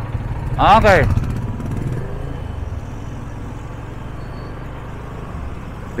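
Yamaha FZ25 single-cylinder motorcycle engine running at low speed in town traffic, a steady low rumble. A voice calls out briefly about a second in.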